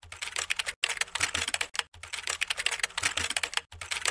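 Rapid typing on a computer keyboard, dense clicks in runs broken by brief pauses, stopping abruptly just after the end.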